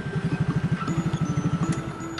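Yamaha Mio scooter's small single-cylinder engine idling, a fast even putter that stops near the end, under background music.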